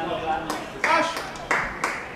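Indistinct shouting from the pitch, broken by about four sharp smacks spread unevenly through the two seconds.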